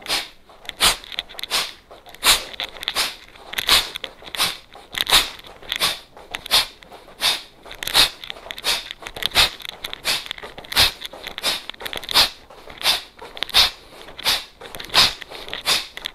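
A person's forceful breaths out through the nose in a rapid, even rhythm, a little faster than one a second, one with each knee-to-elbow crunch of a standing cross-crawl exercise. Every other breath is stronger.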